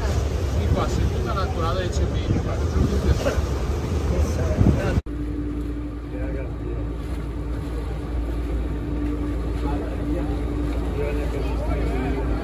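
Motorboat engine running steadily under way, with people talking over it for the first five seconds. After a sudden cut about five seconds in, a steady low engine drone remains with little talk.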